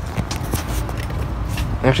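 Rustling and scraping handling noise from a phone being moved about, over a steady low background rumble.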